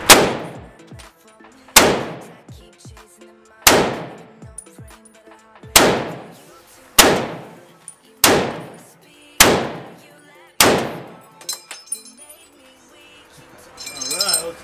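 A rifle fired eight single shots, roughly one to two seconds apart, each a sharp crack with a long echoing tail off the walls of an indoor range. A few lighter clicks follow near the end.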